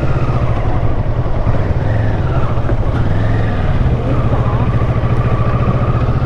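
Kawasaki Versys 650's parallel-twin engine running steadily at low revs as the motorcycle rolls slowly.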